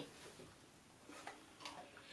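Near silence: room tone with a few faint ticks a little after one second in and near the end.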